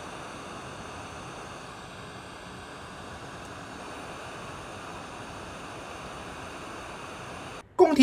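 Hot air rework station blowing a steady hiss of hot air onto a USB flash drive's circuit board, reflowing a replacement controller chip into place; it cuts off abruptly near the end.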